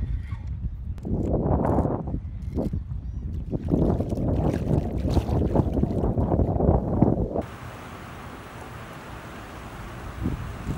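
Water splashing in irregular bursts as a hooked fish thrashes at the surface, with wind buffeting the microphone. About seven seconds in, this cuts off suddenly to a steady, quieter wind hiss.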